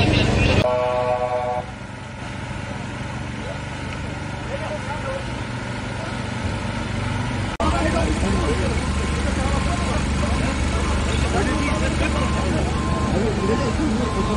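Crowd voices at a road accident scene, with a pitched horn-like tone sounding for about a second near the start. From about halfway, the diesel engine of a telehandler runs steadily under the voices, and toward the end a warning beeper sounds in a run of short beeps.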